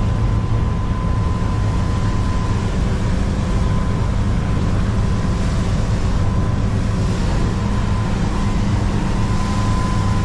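Twin Volvo Penta D4 270 hp diesel engines on IPS drives running steadily under way, heard from the helm inside the cabin, with a steady low drone and the rush of wind and water. A thin, steady high tone runs over it.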